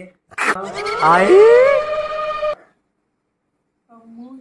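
A person's loud wordless vocal outburst, starting sharply and rising in pitch, lasting about two seconds before cutting off suddenly.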